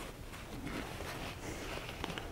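Faint rustling of a batting-lined cotton fabric pouch being worked by hand as it is turned right side out and smoothed flat.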